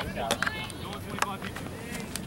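Faint, overlapping voices of players and spectators calling out at an outdoor youth soccer match, with two or three sharp knocks.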